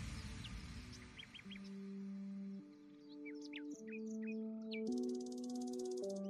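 Soft background music of slow held chords that change about once a second, with quick high bird chirps over it in the first five seconds. Faint outdoor noise fades out in the first second or so.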